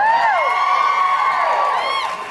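Audience cheering, with several high whoops rising and falling in pitch and one long held cry.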